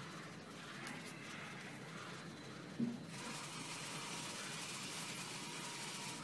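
Faint steady background hiss with a faint steady tone. It turns louder and brighter about halfway through, just after a brief low sound.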